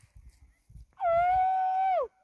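A single loud, long call lasting about a second, held steady at one pitch and then dropping sharply at the end, with low rumbling noise around it.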